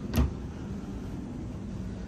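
A single sharp knock just after the start, as a hand handles the overhead electronics box, followed by a steady low mechanical hum.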